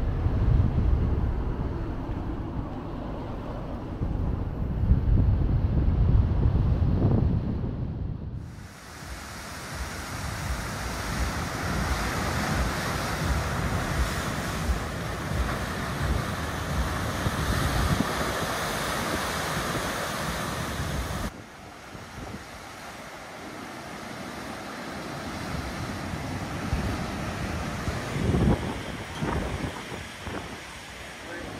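Low rumbling wind noise on the microphone for about eight seconds. Then comes the loud, steady rushing of sea surf surging into a narrow rock inlet. About 21 seconds in, this drops to quieter waves breaking on a rocky shore.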